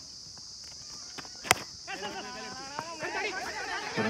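A single sharp crack of a cricket bat striking a weighted tennis ball, about one and a half seconds in, followed by players shouting across the field.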